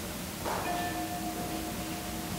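A peace bell struck once about half a second in and left to ring, its clear tone fading slowly over the lower, wavering hum of an earlier stroke; it is rung to open a time of silent prayer.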